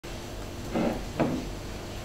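Two short knocks, about half a second apart, over a steady low room hum.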